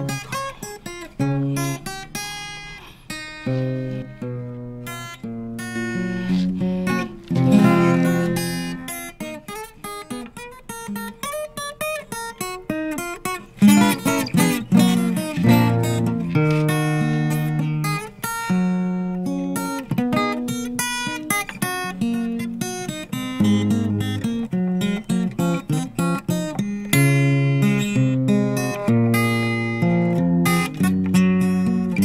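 Solo acoustic guitar played fingerstyle: a plucked melody over bass notes, with a few louder strummed chords about a quarter and halfway through.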